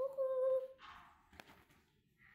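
A girl humming one held note, which stops just under a second in; a short rustle and a single click follow.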